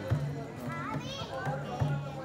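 Theyyam drums beating at a slow, steady pulse, with crowd chatter and children's voices rising and falling over them.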